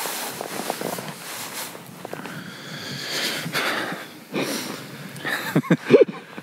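Quiet, breathy laughter from a man, with a short louder voiced laugh near the end.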